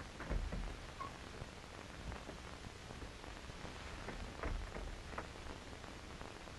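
Steady hiss and crackle of an early-1930s film soundtrack, with a few soft low thumps, the first about half a second in.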